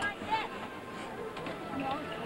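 Indistinct voices with music playing in the background.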